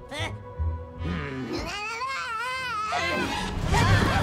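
Cartoon soundtrack: a long wavering, wailing cry lasting about a second and a half in the middle, over background music, with a short voiced sound at the start.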